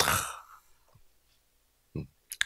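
A man's loud breathy sigh into a handheld microphone, about half a second long, followed by quiet room tone.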